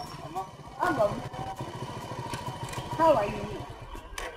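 Small motorcycle engine running slowly as the bike pulls up, its low, even putter fading near the end. A voice calls out briefly twice, about a second in and again, louder, about three seconds in.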